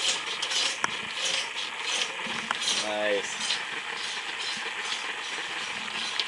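Hand-operated fuel pump being worked, giving irregular mechanical clicks and rattles, with a brief vocal groan about three seconds in.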